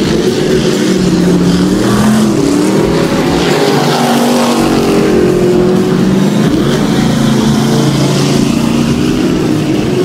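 Several dirt-track race car engines running together on the track, their pitches rising and falling as they lift and accelerate through the turn.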